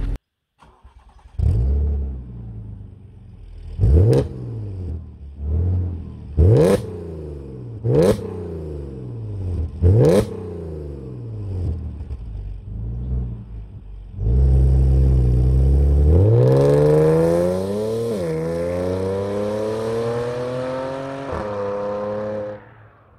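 Audi S5's 3.0 TFSI supercharged V6 through a homemade custom exhaust: idling, blipped four times in sharp revs, then pulling away under hard acceleration with one upshift partway through.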